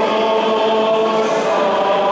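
Several voices singing an Orthodox church chant together on long, steady held notes.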